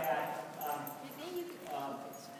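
A handler's voice calling short cues to a dog running an agility course, with the dog barking.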